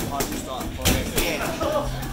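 Boxing gloves landing sparring punches: a sharp smack just under a second in, with a couple of lighter hits around it, over background music.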